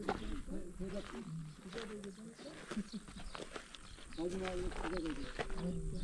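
A low voice intoning in long held notes that glide slowly between pitches, in two phrases with a pause of about a second between them, followed by a short laugh near the end.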